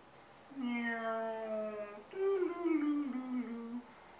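A man humming two long, drawn-out notes: the first held steady and sagging slightly, the second starting higher and stepping down in pitch.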